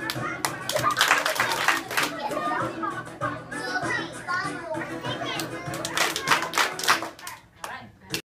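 A group of young children clapping and chattering over music. A run of claps comes about a second in and another near the end, and the sound dies down just before the close.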